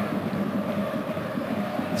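Steady stadium ambience under football match footage: a low, even crowd noise with a faint steady hum.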